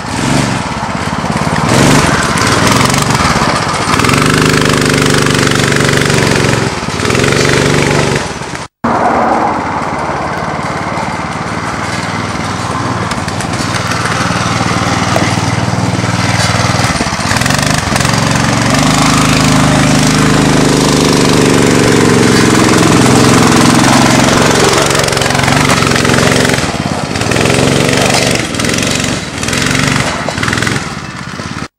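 Off-road go-kart buggy's small 9 hp engine running hard, its pitch rising and falling as it revs up and eases off while the kart drives along a dirt trail. The sound cuts out for an instant about nine seconds in.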